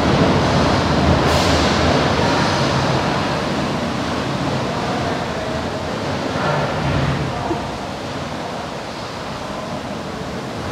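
Steady rush of water pouring through a hatchery fish channel and chute as coho salmon are crowded down into the baskets, slowly fading. Faint voices come through about two thirds of the way in.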